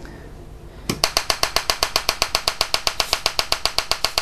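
Homemade TEA nitrogen laser firing: a rapid, even train of sharp electrical snaps, about ten a second, starting about a second in.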